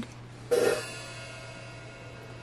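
A drum-kit cymbal struck once about half a second in, then left ringing and slowly dying away.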